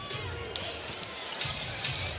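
A basketball being dribbled on a hardwood court, with repeated short bounces over the steady murmur of an arena crowd.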